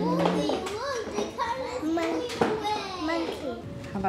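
Young children talking, several high voices with no clear words; a held 'mmm' sound ends just after the start.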